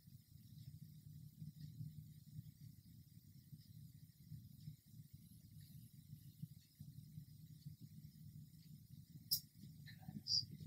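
Near silence: room tone with a steady low hum and a single sharp click near the end.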